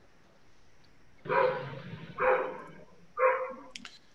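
A dog barking three times, about a second apart.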